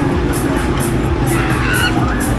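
Breakdance fairground ride running at full speed: loud ride music with a fast steady beat, mixed with the rushing noise of the spinning gondolas sweeping close past.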